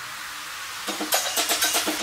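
Progressive house remix at a breakdown: the bass and kick drum are out, leaving a steady hiss. About a second in, a quick staccato pattern of short percussive synth hits starts, building back toward the beat.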